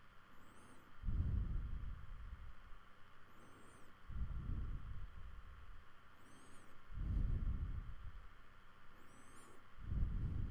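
A person's slow breathing close to the microphone: four low puffs about three seconds apart, each just after a faint high whistle.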